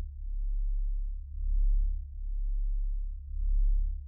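Deep, low sine-like drone swelling and fading about once a second in a slow, even pulse.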